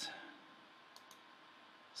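Near silence: low room tone, with one faint click about a second in.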